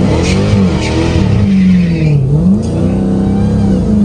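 Dodge Challenger SRT Hellcat Redeye's supercharged 6.2-litre HEMI V8 pulling hard under heavy throttle, heard from inside the cabin. The engine note holds high, dips briefly about two seconds in and climbs back as the car's electronics cut the power, which the driver puts down to launch control reducing the power.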